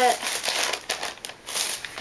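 Plastic bag crinkling and rustling as it is handled, with a brief lull a little past halfway.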